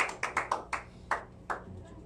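Scattered handclaps from a small group, thinning out and stopping about a second and a half in.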